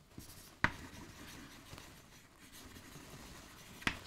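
Chalk writing on a blackboard: faint scratching strokes, with one sharper click a little over half a second in.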